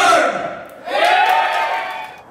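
Live hip-hop performance in a club: the rapped vocal over the amplified beat cuts off in the first half second, then about a second in one long shouted call through the microphone rises in pitch, holds, and fades.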